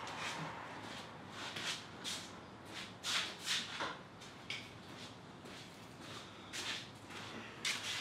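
Faint footsteps and shuffling on a shop floor, with a few soft knocks and rustles of tools being picked up and handled.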